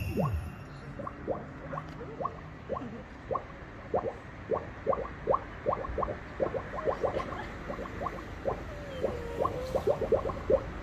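Bubbling water: a run of short blips, each rising quickly in pitch, a few a second at an uneven pace, like bubbles popping up through water.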